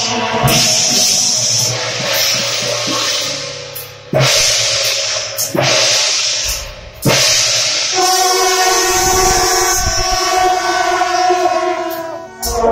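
Brass band of long straight horns and trumpets playing long held notes together. Short gaps come at about four and seven seconds, then a steady held chord runs through the last few seconds.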